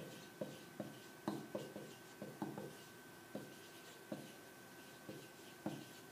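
Felt-tip marker writing words on a paper chart: a series of faint, short, irregular strokes and taps as the letters are drawn.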